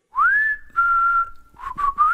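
A person whistling a short tune. One note slides up and holds, then a lower note is held for about a second. A few quick short notes follow, and the whistle slides upward again near the end.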